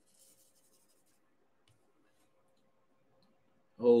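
Near quiet room tone with a faint, brief scratchy clicking in the first second, then a voice exclaiming "Oh, geez" right at the end.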